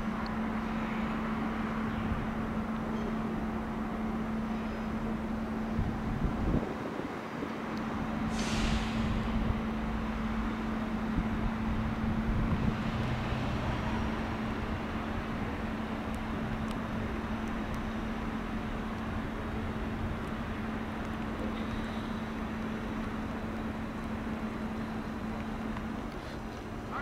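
Railway station ambience: a steady electric hum from trains and equipment standing in the station, with a short burst of compressed-air hiss about eight seconds in.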